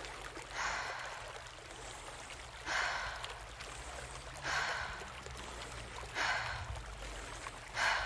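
A woman breathing deeply and audibly, in through the nose and out through the mouth: five rushes of air in all, each under a second, coming about every second and a half to two seconds.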